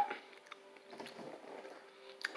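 Faint chewing of a chocolate candy with a strawberry filling, starting about a second in.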